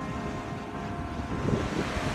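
Wind rushing over the phone's microphone, over the steady wash of ocean surf on the beach.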